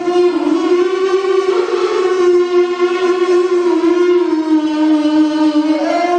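A young man's voice reciting Qur'an verses in the melodic tilawah style, amplified through a handheld microphone. He holds one long unbroken note whose pitch slides slightly up and down, dipping lower before a short rise near the end.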